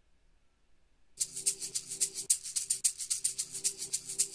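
Background music from a Windows Photos auto-generated video soundtrack begins about a second in, with a fast, even percussion beat over a faint held tone.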